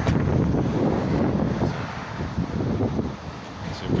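Wind buffeting the microphone: a rough, uneven low rumble that eases off about three seconds in.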